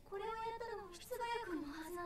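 A young woman's high-pitched voice speaking Japanese: anime dialogue in a soft, troubled tone, in two phrases.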